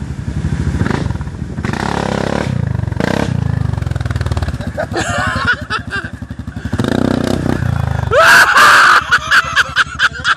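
ATV engine running, a steady low rapid firing pulse. Voices call out over it about halfway through, and a loud shout near the end is the loudest sound.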